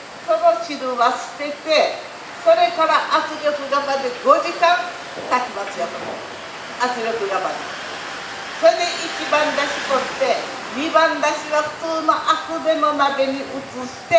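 Speech only: a woman talking in short phrases into a handheld microphone.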